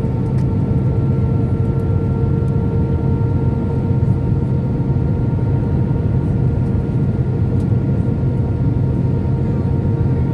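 Cabin noise of an Airbus A319 airliner on approach: steady jet engine and airflow noise with a low rumble and a few constant whining tones.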